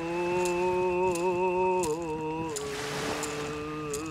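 A man's solo voice singing a remembrance song in long held, wavering notes, stepping down to a lower pitch about two seconds in. A faint click recurs about every three-quarters of a second.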